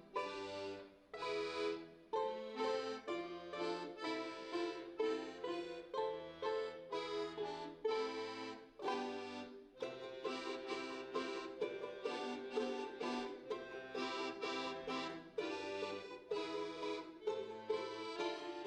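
Ensemble of two balalaikas and a piano accordion playing a folk-style piece: the balalaikas plucking and strumming quick chords over the accordion's melody and bass notes.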